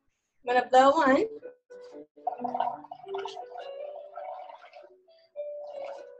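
Air blown through a drinking straw into a paper cup of soapy paint water, bubbling and gurgling, with background music. A short, loud burst of voice about a second in is the loudest sound.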